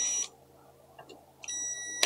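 Ridgid cordless drill's motor whining in two short runs, backing out the motor mount screws of an electric skateboard gear drive: one run stops about a quarter second in, the next starts about a second and a half in.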